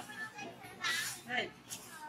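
A few short, faint voice-like calls, one falling in pitch about one and a half seconds in.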